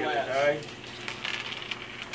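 A voice briefly at the start, then faint scattered clicking and rattling of small plastic dice being gathered and handled on a tabletop.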